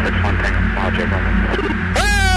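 Steady low hum of a military jet's recorded cockpit audio, with faint snatches of voices over the intercom.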